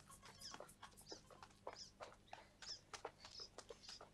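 Near silence with faint, scattered short high chirps of small birds.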